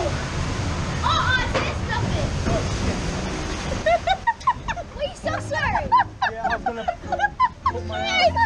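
Water rushing and splashing around a log-flume boat as it moves along the channel. From about four seconds in, a quick jumble of short, high chirping calls comes in over the water.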